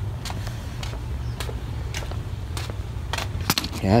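A Philco radio's fibreboard shortwave antenna panel being handled and set down on a wooden bench: several light taps and clicks, the sharpest about three and a half seconds in, over a steady low rumble.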